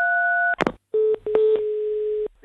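Telephone line sounds after the call is hung up: a steady tone cut off by a click about half a second in, a short silence, then a steady lower dial tone broken by a couple of clicks.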